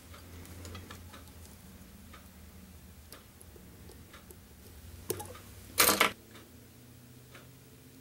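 Small tools being handled at a fly-tying vise: faint scattered clicks and ticks over a low hum, with one louder, short, sharp sound a little before six seconds in.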